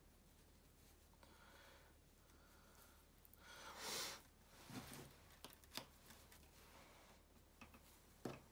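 Faint hand-knitting sounds, mostly near silence: a brief rustle of yarn and knitted fabric just before the middle, then a few light clicks from the knitting needles in the second half.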